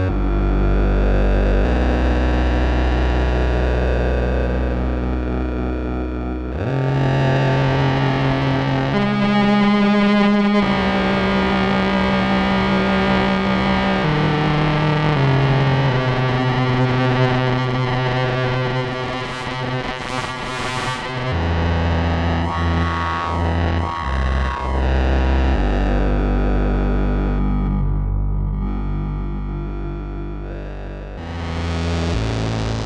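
ElectroComp EML 101 analog synthesizer playing long, held, buzzy notes. The pitch steps to a new note every few seconds, and the tone shifts and sweeps as its knobs are turned.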